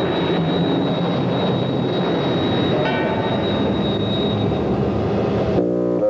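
Dense city street traffic noise, a steady rumble with a short horn blast about three seconds in. Brass music cuts in near the end.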